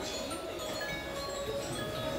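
Musical animated Christmas village decorations playing a tinkling, chime-like melody of short, clear notes.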